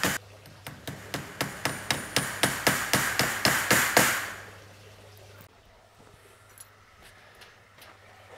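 Hammer tapping nails into the pine timber frame in a quick, even run of about six blows a second. The blows stop about four seconds in, leaving only a faint low hum.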